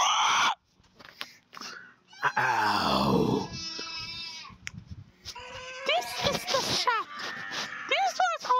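Animal-like vocal noises answering 'can I pet you?': a long growl falling in pitch about two seconds in, then a high held squeal, and short squeaky cries that rise and fall near the end.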